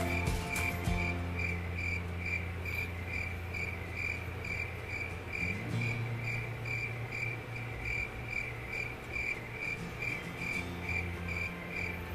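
Cricket chirping in a steady rhythm, about two short chirps a second, over a low steady hum.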